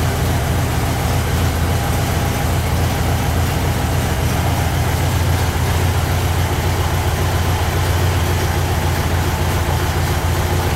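Air-cooled flat-four engine of a 1973 Volkswagen Kombi (Type 2 bus) idling, a steady low rumble that holds even throughout.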